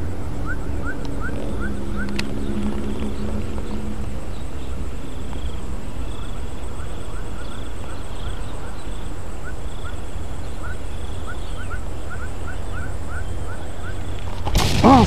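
Outdoor ambience with a steady low rumble. Over it, an animal's short rising chirps repeat about three times a second, once at the start and again in the last few seconds. A faint hum sounds under the first few seconds.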